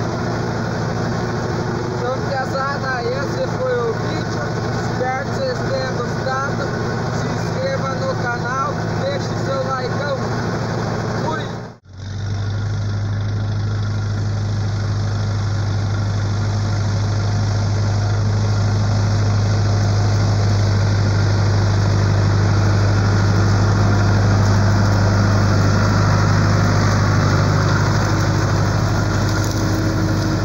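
John Deere tractor's diesel engine running steadily while pulling a corn planter, first heard from the driver's seat. After a brief break about twelve seconds in, it becomes a strong, steady low hum that grows slightly louder as the tractor works across the field.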